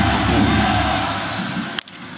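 Baseball stadium crowd noise with cheering and music. Near the end comes a single sharp crack of a bat meeting the pitch, the swing that sends the ball out for a home run.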